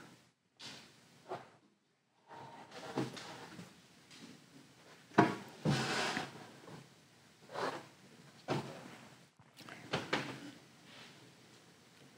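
Matted photo prints being handled and swapped on a display easel: scattered soft knocks, scrapes and rustles of card board, the loudest cluster about five seconds in.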